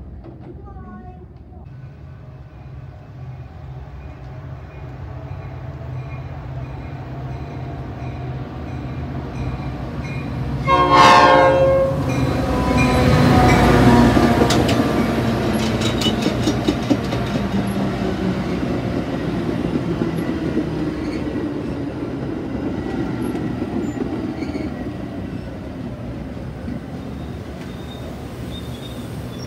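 A Metra commuter train's diesel locomotive and bi-level coaches passing close by. The engine hum grows, and a short horn blast about eleven seconds in is the loudest moment. The locomotive then goes past with a run of wheel clicks over the rail joints, and the coaches' steady rolling rumble follows.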